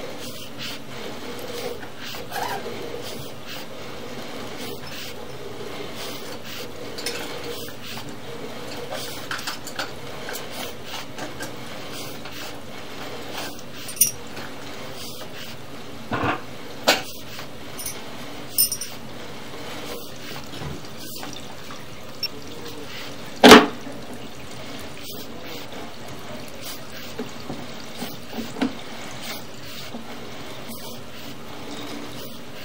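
Sewer inspection camera's push cable being pulled back out of the line, a steady rushing noise broken by scattered clicks and clattering knocks, the loudest a sharp knock a little past the middle.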